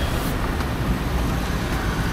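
Street traffic noise: a steady rumble of passing road vehicles with no single event standing out.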